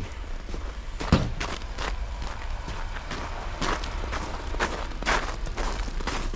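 Footsteps on icy, snow-covered ground, with one sharp thud about a second in.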